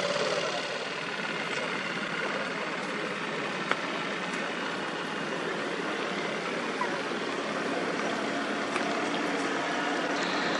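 Boat engines idling steadily in a lock chamber, with one short knock a little over a third of the way through.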